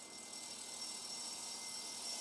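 Faint, steady background hiss with a thin high tone running through it, and no distinct event.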